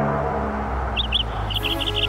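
Small birds chirping in quick runs of short notes, over a steady low hum from the stage sound system.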